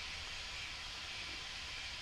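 Steady hiss with a low hum underneath: the background noise floor of the talk's recording, with no other sound standing out.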